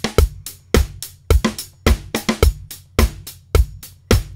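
A sampled drum loop playing back in a steady beat: kick, snare and hi-hat, with a heavy low hit about every half second and lighter hits between.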